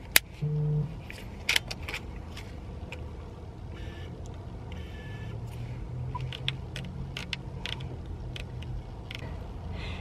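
Scattered sharp clicks and small knocks of a Canon EOS 80D DSLR being handled, as its buttons are pressed and its flip-out screen is swung open. Under them is a low steady hum inside a car.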